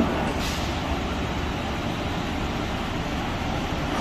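Steady running noise of a Long Island Rail Road M9 electric train standing at the platform, its onboard equipment and ventilation running, with a short hiss of air about half a second in.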